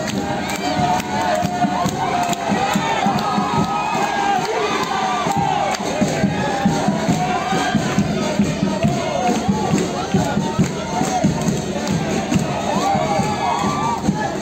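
Stadium crowd of football supporters cheering and shouting, many voices overlapping and rising and falling in pitch over a steady crowd din.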